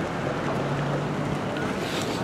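City street ambience with wind rushing on the microphone: a steady, even noise with a faint low hum beneath.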